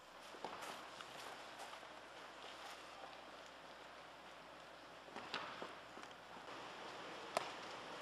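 Steady noise of a large indoor soccer hall, broken by a few sharp knocks of a soccer ball being kicked, the loudest near the end.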